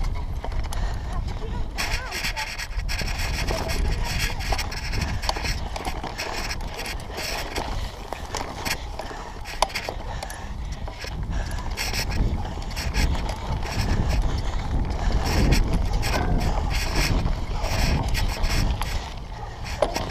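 Mountain bike ridden over bumpy grass and dirt, heard from a handlebar-mounted camera: a constant low rumble with frequent knocks and rattles from the bike. Voices come through now and then.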